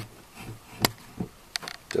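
Mini milling machine head being wound down the column on its rack and pinion, giving a few sharp separate clicks and knocks, the loudest a little under a second in. The feed sounds bumpy and notchy, the pinion not running cleanly on the rack teeth.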